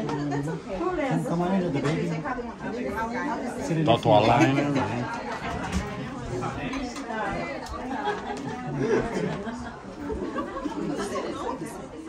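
People talking, with voices overlapping in chatter; one voice is louder and higher about four seconds in.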